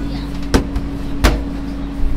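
Two sharp knocks, about two-thirds of a second apart, over a steady hum and the low rumble of street traffic.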